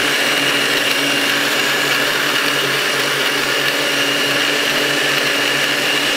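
Countertop blender running steadily at full speed, crushing ice into a gin, lemon and ginger syrup mix, with a constant high motor whine.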